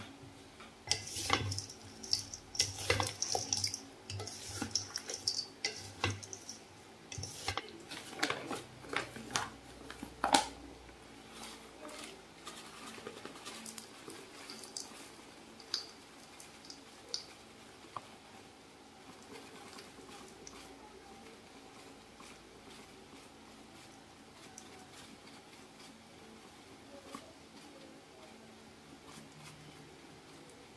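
Wooden spoons mixing sliced green mango and sugar in a stainless steel bowl: a run of knocks, clatters and scrapes against the metal over the first ten seconds or so, then only a few scattered clicks.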